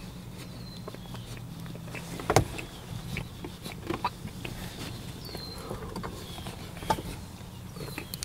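Close-miked mouth sounds of a man eating cauliflower-crust pizza: chewing with sharp, scattered mouth clicks, the loudest a little over two seconds in, over a steady low hum.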